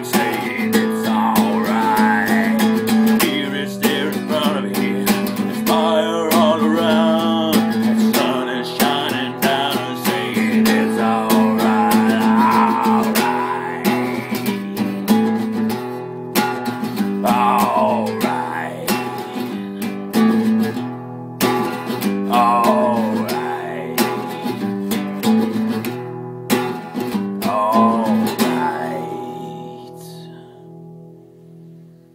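Instrumental ending of a country/Americana song: strummed acoustic guitar chords, with a lead melody of sliding, wavering notes played over them. The music grows quieter over the last few seconds.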